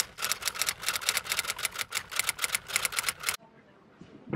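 A rapid, even run of sharp mechanical clicks, about seven a second, that stops abruptly near the end.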